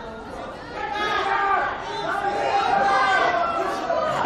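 Several people talking and calling out over one another at once, in high-pitched voices. It gets louder about a second in.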